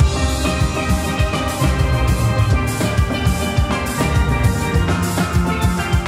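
Steel band playing: many steel pans struck in a quick rhythm, the ringing high notes of the front pans over the low notes of bass pans, with drums keeping the beat.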